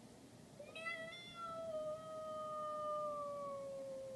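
A single long, high-pitched drawn-out cry that starts about half a second in, is held for over three seconds and slides slowly down in pitch.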